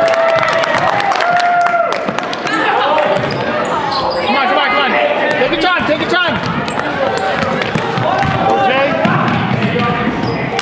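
A basketball bouncing repeatedly on a hardwood gym floor during play, with sneakers squeaking on the boards about four to six seconds in and voices calling out throughout.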